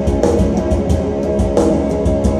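A black metal band playing live: heavily distorted electric guitars over fast, dense drumming.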